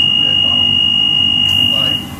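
Door-closing warning tone on a London Underground 1992 Stock train: a single steady high-pitched beep held for about two seconds, signalling that the doors are about to close.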